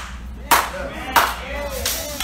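Sharp single hand claps, about two-thirds of a second apart, the last one softer, each with a short ring of room echo.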